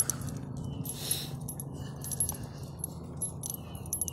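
Light metallic jingling: small irregular clinks several times a second, over a low steady hum.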